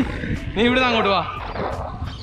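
A man shouting one drawn-out "hey" that falls in pitch, over a steady low rumble of wind on the microphone of a camera riding on a moving bicycle.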